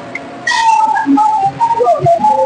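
A woman's voice singing high, held and gliding notes into a microphone.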